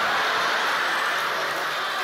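A live comedy audience laughing together after a punchline, a steady wash of crowd laughter that eases off slightly near the end.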